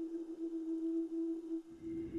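A steady, pure held tone from a soundtrack drone, with a faint hiss around it. A low rumble joins near the end.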